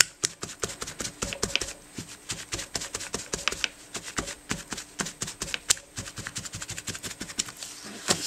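Crumpled paper towel dabbed repeatedly onto a wet paint wash on a journal page, lifting paint: a quick, irregular run of soft taps, several a second.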